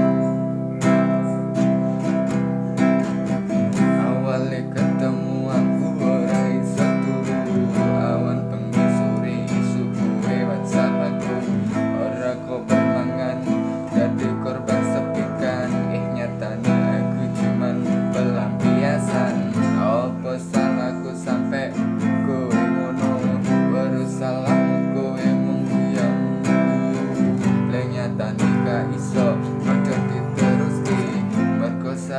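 Nylon-string classical guitar strummed steadily, moving through a chord progression with C, E minor, A minor, F and G.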